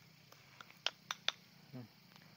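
Three light clicks about a second in, each about a quarter second apart: a spoon knocking against the side of a plastic bucket while stirring a fertilizer solution.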